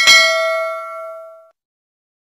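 Notification-bell sound effect: a single bright bell ding that rings on and fades away, gone about a second and a half in.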